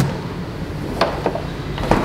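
Light clicks and knocks of things being handled at an open refrigerator, three short ones about a second apart, over a steady room hum.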